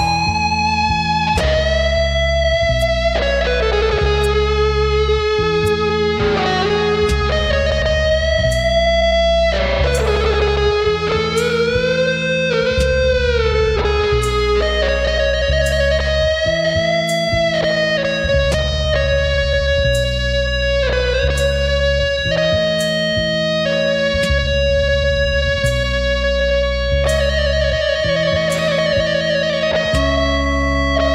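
Instrumental guitar music: a sustained lead guitar melody with sliding pitch bends and vibrato over a steady bass line.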